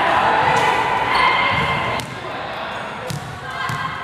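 A basketball bouncing on a hardwood gym floor, with a sharp knock about two seconds in, under indistinct voices echoing around a large gym.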